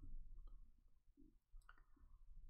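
Near silence: room tone with a few faint clicks, one about half a second in and one near the end.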